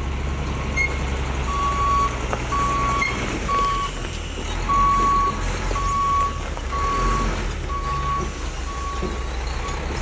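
Semi tractor-trailer backing up during a three-point turn: its reversing alarm sounds a steady single-pitched beep about once a second over the low running of the diesel truck engine.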